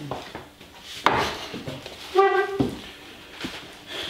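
A wooden chair knocked and dragged on a tiled kitchen floor as someone sits down at the table: a sharp knock about a second in, then a short squeak near the middle.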